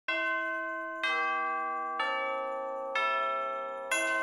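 Intro music of bell-like chimes: five chords struck about once a second, each ringing on and slowly fading before the next.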